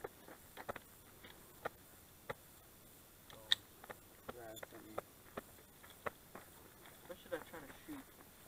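Mostly quiet, with a scattering of small sharp clicks, the loudest about three and a half seconds in, and faint distant talking twice, near the middle and near the end.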